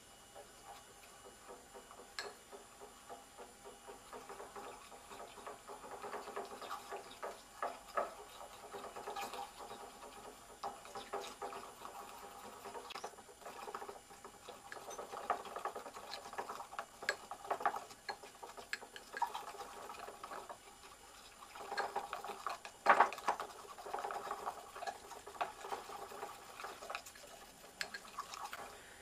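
A paintbrush handle stirring a thick mix of glue and powdered pigment in a small glass bowl: irregular light ticks and scrapes of the handle against the glass, with one sharper click about three-quarters of the way through.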